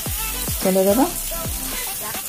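Shredded bamboo shoot and okra sizzling in oil in a steel kadai while a spatula stirs them. Background music with a steady beat plays over it, with a short melodic phrase, the loudest part, about halfway through.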